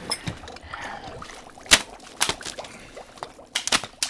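Soup being ladled from a ceramic tureen: a metal ladle clinks sharply against the bowl several times, loudest about two seconds in, with a quick run of clinks near the end, over faint dribbling and sloshing of soup.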